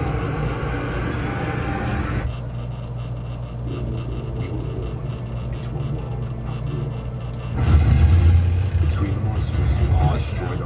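Action-film trailer soundtrack: a dense rush of noise with flames on screen that cuts off about two seconds in, then quieter low rumbling effects with voices, and a deep boom about eight seconds in.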